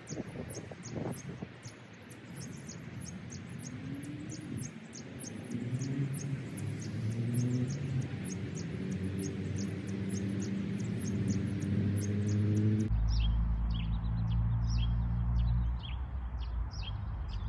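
Small birds chirping in quick, evenly repeated high calls, over a low hum that builds from about a third of the way in. About 13 seconds in, a deep rumble starts abruptly and the chirps shift lower in pitch.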